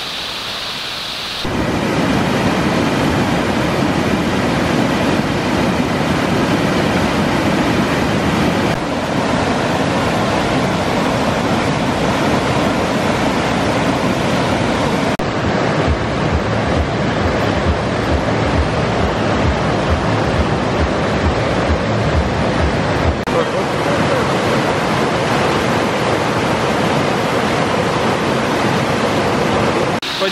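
A mountain river rushing over rocks and small falls: a loud, steady wash of water that steps up about a second and a half in and shifts in tone a few times along the way, with low thuds through the middle stretch.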